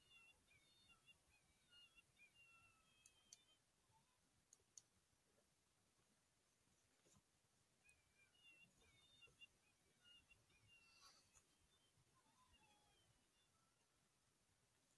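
Near silence, broken by faint high-pitched chirping calls in two spells, one at the start and one past the middle, and a few faint clicks.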